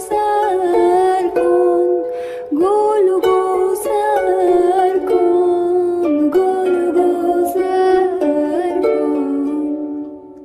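Background music: a slow melody of long held notes, its level dropping away near the end.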